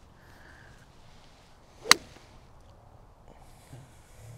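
A golf iron striking a ball on a full swing: a brief swish, then one sharp crack about two seconds in.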